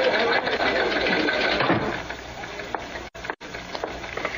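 Radio-drama sound effect of a busy newspaper office: typewriters clattering under a hubbub of voices. About two seconds in, the din falls away to a quieter background as the door is closed.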